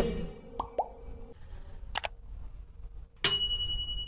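Sound effects of a subscribe-button animation: two quick pops, a click about two seconds in, then a bell ding near the end that rings on for about a second.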